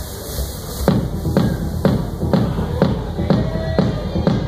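Techno played loud over a club sound system. After a quieter first second, a four-on-the-floor kick drum comes in and runs at about two beats a second over a steady bass.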